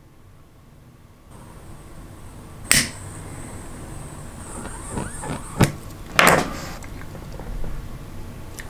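Pocket lighter held lit against heat-shrink tubing on a crimped battery-cable lug, its gas flame giving a faint steady high hiss that starts about a second in. Sharp clicks and handling knocks come about three seconds in and again near the end.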